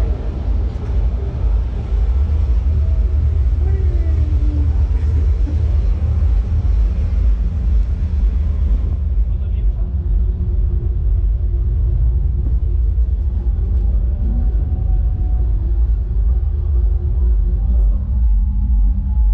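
A steady low rumble with faint, indistinct voices over it; the higher hiss above it drops away about halfway through.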